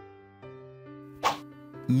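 Background music with steady held notes, and one short plop a little over a second in.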